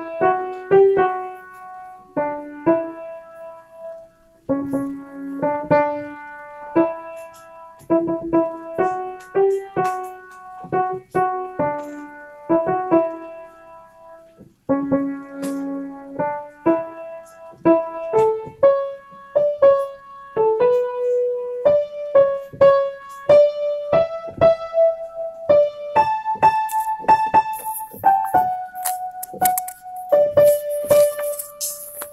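Piano playing the introduction of a choral piece: separate notes and small chords, each struck and left to fade, at one to two a second and a little quicker in the second half.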